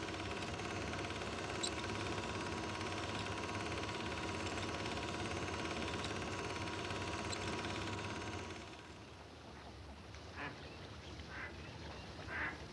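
A steady hum with hiss and a faint steady tone for the first eight seconds or so, then it drops away. Near the end, ducks quack a few times in short, separate calls.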